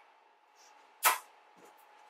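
A single short swish close to the microphone about a second in, over a faint steady hum.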